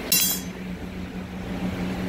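Steady low hum of the reach-in cooler's fan motor, running alone to defrost an iced-over coil while the compressor is kept off. A short, sharp clinking noise comes just after the start.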